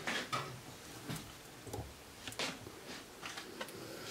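A few faint ticks and rustles as gloved hands rub dried herbs into the skin of a raw duck on a wooden cutting board.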